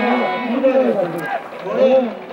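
Voices calling out in long, drawn-out phrases over the stadium, with no other distinct sound.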